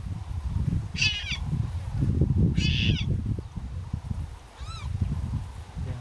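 Leopard cub crying: two short, high-pitched cries about a second in and just under three seconds in, then a fainter, arching cry near the end. A low rumbling noise runs underneath.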